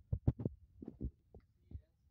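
Kitchen knife chopping a tomato on a bamboo cutting board: a run of short, dull knocks, about seven in two seconds, unevenly spaced.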